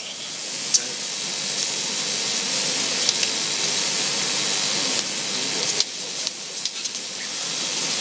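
A steady, loud hiss of noise that dips briefly about five seconds in and then builds again.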